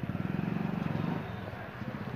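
A motor vehicle engine running close by, a low, rapidly pulsing rumble that is loudest in the first second and then fades.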